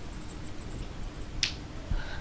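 Dry-erase marker writing on a whiteboard: a row of faint, quick high squeaks in the first second, then a brief hiss about a second and a half in.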